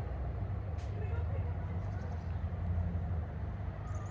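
A steady low rumble, with a faint click about a second in and a short high chirp near the end.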